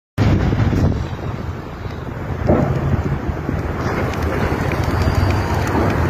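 Wind buffeting a phone microphone outdoors: a steady, fluctuating low rumble.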